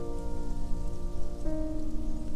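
Solo piano playing a soft arrangement: a chord rings out and a new chord is struck about one and a half seconds in, over a steady crackling noise layer.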